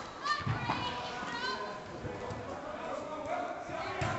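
Players' shouts and calls across an indoor football pitch in a sports hall, scattered voices overlapping, with a couple of knocks in the first second.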